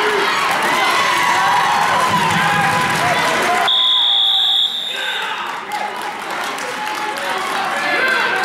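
Spectators in a gym shouting and cheering at a wrestling match. About four seconds in, the scoreboard buzzer sounds one steady high tone for about a second, signalling the end of the period.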